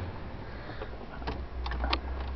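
A few light plastic clicks from the 1998 Dodge Caravan's dash-mounted headlight switch being worked by hand, over a faint steady low hum.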